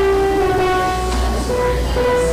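Instrumental music of slow, sustained chords on a keyboard instrument, the held notes changing about every half second to a second.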